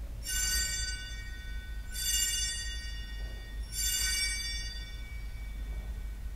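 Altar bells rung three times, about two seconds apart, each a bright high chime that fades away; they mark the elevation of the chalice at the consecration of the Mass.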